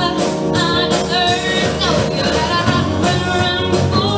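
A young female singer performing a song live, singing over her own strummed acoustic-electric guitar.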